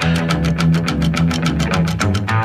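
Rockabilly instrumental break: electric guitar picking over a bass line and a quick, steady beat.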